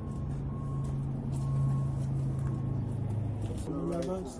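A vehicle backing up: a steady engine hum with a backup alarm beeping repeatedly. The engine hum stops shortly before the end as a voice begins.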